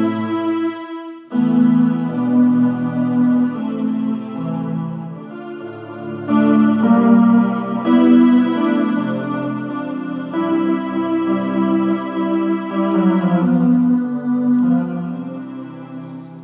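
Electronic keyboard playing a slow chord progression in F sharp with a sustained strings voice, each chord held for a second or two. There is a brief break about a second in, and the last chord fades out at the end.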